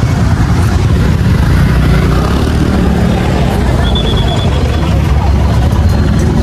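Busy city street traffic: a steady low rumble of cars, buses and motorbikes with a crowd's voices in the background, and a brief high-pitched beeping about four seconds in.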